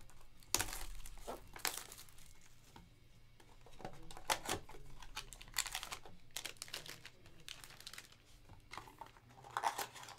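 Hands tearing open and crumpling the wrapping of a sealed Topps Triple Threads trading-card box, heard as irregular crinkling and ripping with a few sharper, louder rips.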